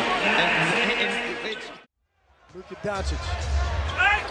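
Basketball game broadcast sound: arena crowd noise and voices, which drop to dead silence for about half a second just before the middle as one clip cuts to the next, then a different arena's crowd noise comes back.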